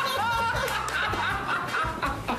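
A group of young men laughing together, with background music running underneath.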